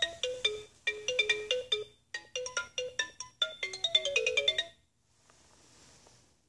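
Toy music player's electronic xylophone voice playing a short melody of quick, bright notes, set off by a button press; it pauses briefly twice and stops a little under five seconds in.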